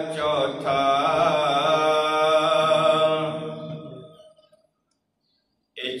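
A man's voice chanting Gurbani scripture (the Hukamnama) in long, drawn-out melodic phrases. The chant fades out about four seconds in, and after more than a second of silence it starts again at the very end.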